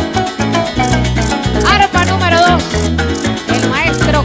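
Venezuelan joropo played by a llanera band: the llanero harp leads over a stepping bass line, with maracas shaking a fast steady rhythm.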